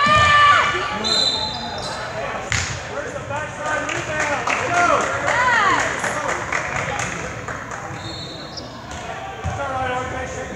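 Basketball bouncing on a hardwood gym floor in play, a run of short repeated thuds, with spectators' voices echoing in the large gym.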